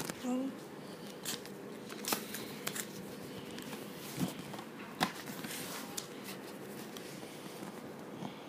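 Pages of a paperback book being turned and handled: several sharp papery rustles and taps at irregular intervals.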